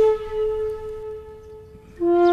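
Background music: one long held flute note that fades away over the two seconds.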